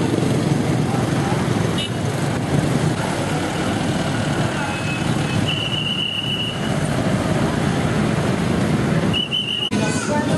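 Street traffic: trucks and motorcycles running past at close range, with voices in the background. A long high whistle blast sounds midway, and a second, shorter one comes near the end.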